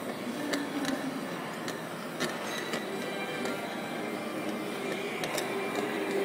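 TIG welding arc running steadily, a hissing buzz with scattered sharp crackles. Music plays underneath.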